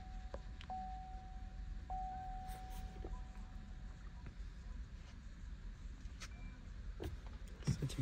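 Car warning chime, a steady electronic tone that restarts with a click about every second, heard as the ignition is switched on during smart-key programming. The tone stops about four seconds in, leaving a low hum and a few soft clicks.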